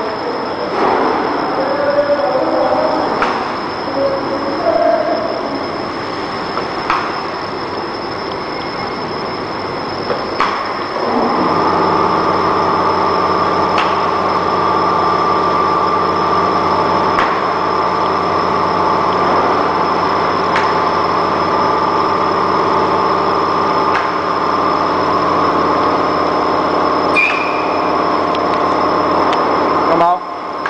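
YFML920 sheet-separating laminator running: steady mechanical noise with a sharp click about every three to four seconds. About eleven seconds in, a louder steady motor hum with a pitched drone sets in and holds.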